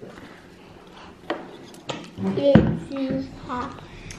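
A few sharp clicks of small objects handled on a tabletop, then a voice sounding without clear words, with a heavy thump partway through.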